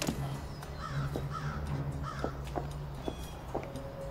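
A crow cawing three times in quick succession about a second in, over a low steady hum, with a few soft knocks.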